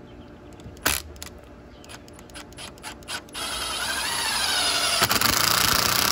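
Milwaukee cordless drill boring a pilot hole for a screw into a wooden frame behind wire mesh: a few light clicks, then from about halfway through the motor runs under load, its pitch rising and then dipping.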